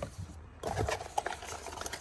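Cardboard packaging being handled: an irregular rustling and scraping of the paperboard box and its insert as accessories are lifted out, starting a little over half a second in.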